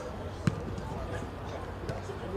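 A football being kicked on grass: one sharp thud about half a second in and a softer one near the end, over players' voices.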